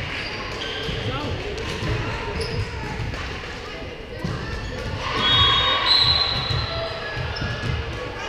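Voices of players and spectators echoing in a large gymnasium, with thuds of a volleyball bouncing on the hardwood floor. The voices get louder and higher-pitched about five seconds in, with shouts.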